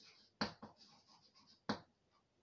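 Chalk writing on a blackboard: faint scratching strokes, with two sharp taps of the chalk on the board, about half a second in and near the end.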